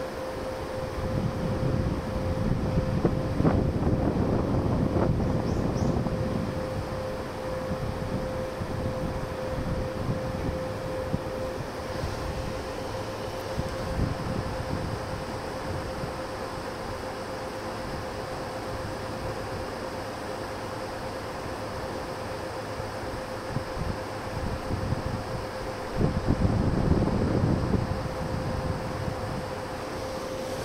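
Wind buffeting the microphone over a steady low rumble. It gusts louder in the first few seconds and again near the end, with a faint steady hum running through much of it.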